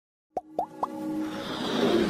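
Animated logo intro sound effects: three quick plops about a quarter second apart, then a swelling build of music.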